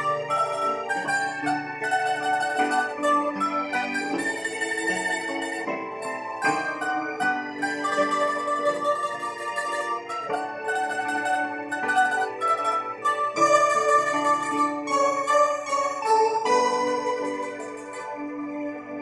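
Bandurria playing a slow song melody, with a steady run of picked, ringing notes that move from pitch to pitch.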